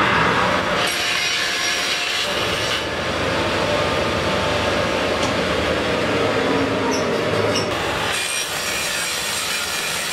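Table saw running with its blade cutting through a wooden drum shell as the shell is rolled around on a roller jig, cutting a ring off it. It is one continuous loud cut whose tone shifts a few times as the shell turns.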